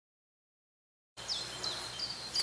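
Silence for about the first second, then woodland ambience with a few short, falling bird chirps.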